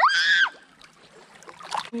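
A child's short, high-pitched squeal at the start, rising then falling in pitch, followed by the faint sound of shallow river water moving.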